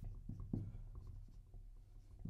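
Dry-erase marker writing on a whiteboard: faint short strokes as letters are drawn, the clearest about half a second in.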